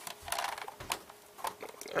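Short plastic clicks and scrapes of a Milwaukee M18 battery pack being gripped and worked loose on its charger, a few separate clicks mainly in the first half and again around the middle.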